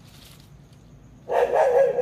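A dog barking: one loud, short burst a little past halfway, over a faint steady background.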